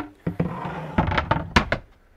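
A wooden board being slid into place over a camper van's bed frame: a scraping rub of wood, then a few sharp knocks as it settles.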